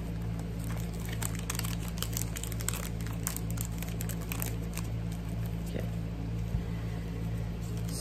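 Small plastic bags of metal craft dies crinkling and rustling in the hands as a scatter of light crackles, mostly in the first five seconds, over a steady low hum.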